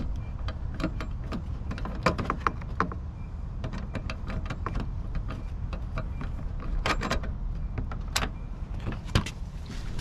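A Torx screw in a truck's fender-to-bumper joint being turned out with a small hand-held Torx driver: scattered small metallic clicks and scrapes, several sharper ones near the end, over a steady low hum.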